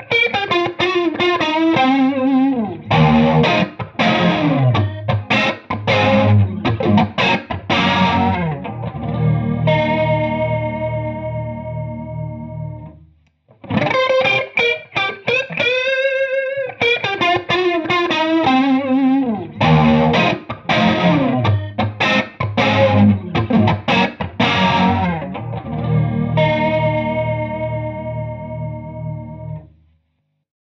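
Electric guitar (a Stratocaster) played through a Marshall Bluesbreaker-style overdrive, an analog chorus pedal and a Friedman Small Box 50 amp: a lightly overdriven, chorused phrase that ends in a ringing chord which fades away. After a brief pause the identical phrase plays again, as an A/B of two chorus pedals.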